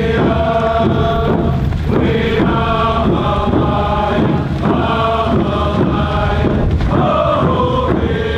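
A group of voices chanting together in a song, in repeated phrases a couple of seconds long.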